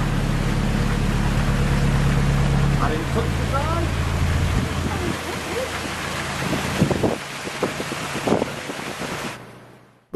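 Narrowboat's diesel engine running with a steady low hum under a constant rushing of water in the lock chamber. The engine note shifts about three seconds in and drops away after about five, and a few knocks come near the end.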